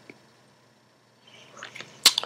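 Quiet room tone, with a few faint short ticks in the last half second.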